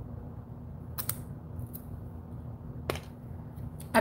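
A few sharp clicks and taps of plastic makeup packaging being handled, two close together about a second in and one near three seconds, over a steady low hum.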